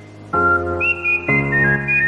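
Instrumental music: full chords struck about a third of a second in and again about a second later, with a high, thin melody line above them.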